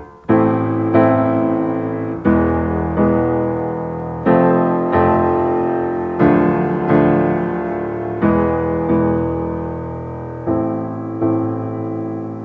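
Grand piano playing a chord progression with both hands in a simple repeating rhythm. Each chord is struck twice, about two-thirds of a second apart, and the chord and bass note change every two seconds or so.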